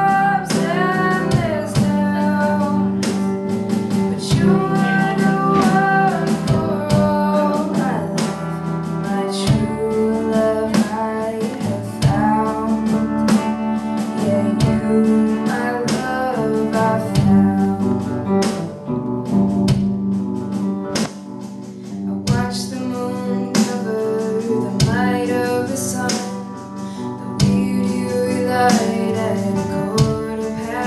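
Live small band playing a slow song in waltz time: electric guitar and drum kit under a sung melody line.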